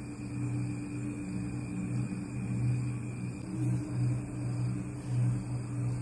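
Steady low electrical hum of a glass-top induction cooktop running under the pan, wavering slightly in loudness.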